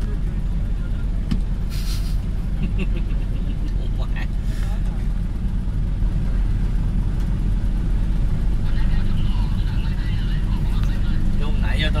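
A steady low rumble of idling motor vehicle engines, with a short hiss about two seconds in and faint voices of a crowd.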